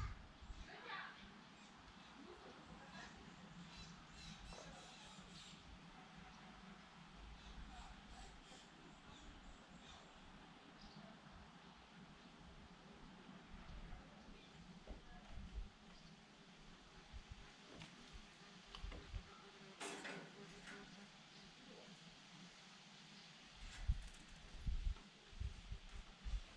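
Quiet lakeside ambience: faint, scattered bird chirps over a soft background hiss, with a sharp click about two-thirds of the way through and a few low thumps near the end.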